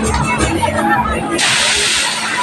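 Fairground music with a steady beat and a voice over it. About one and a half seconds in, a loud, sudden hiss of released compressed air from the kangaroo ride's pneumatics cuts in over the music.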